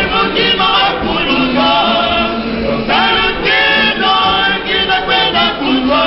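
A choir singing a gospel song without instruments, in held chords that slide up to a higher pitch about three seconds in.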